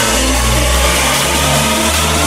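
Electronic dance music track playing loud, with a heavy, growling sustained synth bass line that shifts pitch every half second or so under dense synths.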